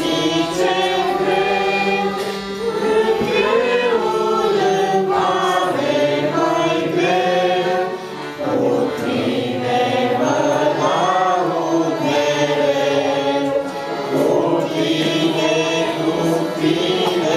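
Three young girls singing a Christian song together in Romanian, with a low note held steady underneath them.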